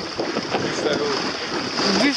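Wind buffeting the microphone over the steady wash of choppy sea water around a small boat.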